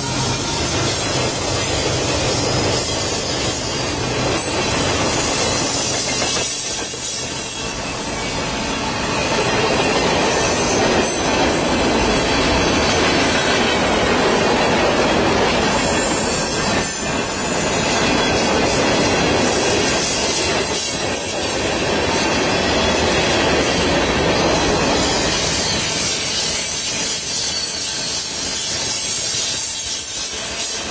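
Mixed freight cars (boxcars, covered hoppers, tank cars) rolling past close by: a steady rumble and clatter of steel wheels on rail, a little louder in the middle.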